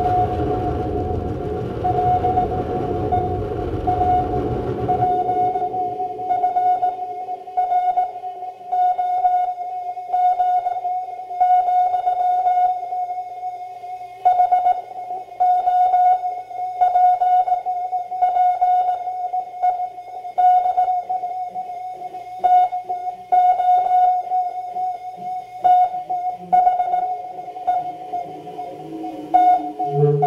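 Live experimental electronic music. A dense low drone fills the first five seconds, then drops away to a steady high tone with a stuttering pulse repeating about once a second.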